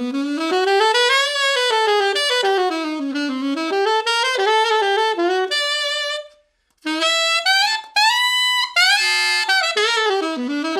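Trevor James Horn 88 alto saxophone with a JodyJazz DV mouthpiece playing a bright pop-style line of quick runs that sweep up and down. There is a short breath pause about six seconds in, then the line climbs to high notes near the end.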